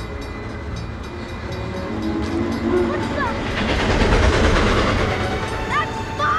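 A train approaching: a low horn sounds briefly about two seconds in, then the train's rumble builds and is loudest near the end.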